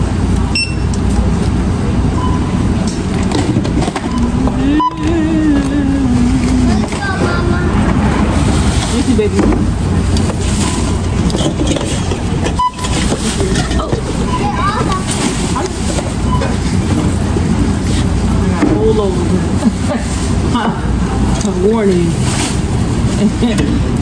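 Busy checkout lane ambience: a steady low hum with indistinct voices, and a few short single beeps scattered through it, typical of a barcode scanner reading items.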